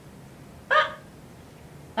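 A woman's single short exclamation, an 'ah!' of about a third of a second, about two-thirds of a second in, over quiet room tone.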